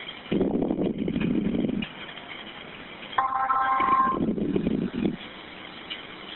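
A steady electronic telephone tone about a second long, a few seconds in, on a 911 call line, between stretches of muffled noise from the caller's phone.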